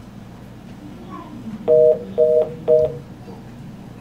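Telephone line tone: three short two-note beeps, evenly spaced about half a second apart, over a steady low background hum.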